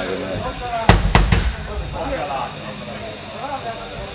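A man talking through a stage PA, with two loud thumps about a second in, a quarter of a second apart.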